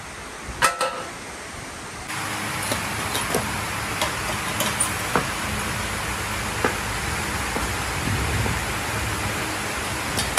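Steel tubing clanks a few times, then a steady hiss of workshop noise with a low hum runs on, broken by scattered metallic clinks.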